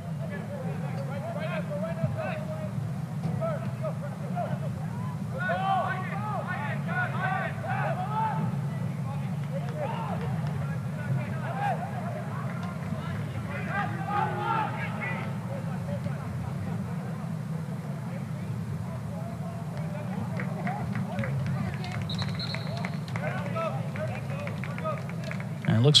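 Field-level sound of a soccer match in play: players' distant shouts and calls over a steady low background rumble, with a short high whistle blast near the end as the referee signals.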